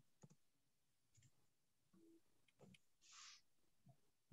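Near silence: a few faint scattered clicks and a brief soft hiss about three seconds in.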